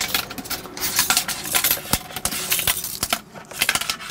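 Steel tape measure being handled in a floor storage compartment: a rapid, irregular string of light metallic clicks and clinks as the blade rattles against the compartment, with a sharper knock about two seconds in.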